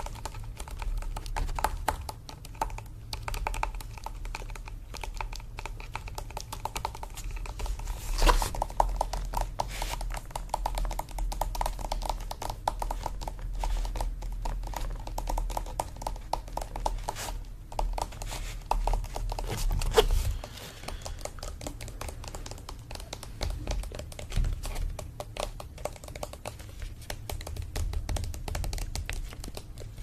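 Rapid finger tapping on a stretched painting canvas and its wooden frame, held close to the microphone: a dense run of light clicks with a couple of louder knocks, about 8 and 20 seconds in.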